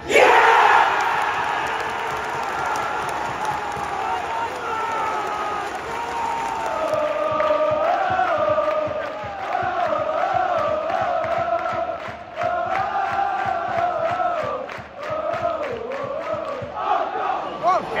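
Football stadium crowd: a loud roar at the very start that fades over a couple of seconds, then the home fans singing a chant together in unison, with clapping.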